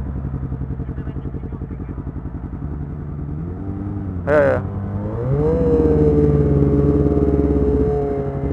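Sport motorcycle engines idling with a fast, even pulse. About five seconds in one is revved up and held at a steady higher pitch. A short high-pitched wavering sound, like a brief shout, comes just before.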